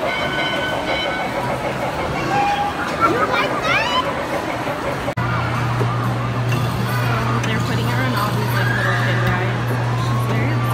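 Coin-operated kiddie rides giving out electronic beeps and sound effects over background voices. A little after five seconds in the sound cuts abruptly and a steady low hum sets in.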